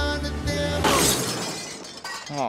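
Music with held tones, broken off just under a second in by a loud shattering crash that fades away.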